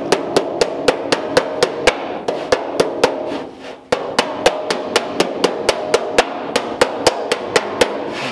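Body hammer striking the edge of a steel door skin against a heel dolly held behind the panel, about four quick ringing blows a second, folding the skin's edge over to begin the hem. The hammering breaks off for about half a second a little past three seconds in, then resumes at the same pace.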